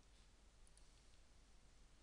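Near silence: faint room tone with a few faint computer mouse clicks in the first second.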